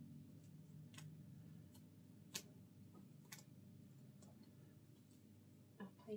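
Near silence: a steady low room hum with a handful of faint, sharp clicks scattered through it, the clearest about two and a half seconds in.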